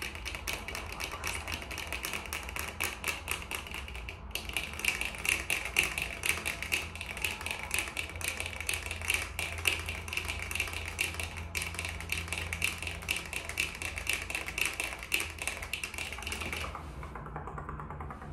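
Fast, random fingernail and finger-pad tapping close to the microphone: a dense run of quick small taps. It breaks briefly about four seconds in and again near the middle, then stops about a second before the end.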